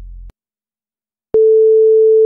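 The last low note of the music cuts off, and after about a second of silence a single loud, steady electronic beep begins: one pure tone that holds unchanged.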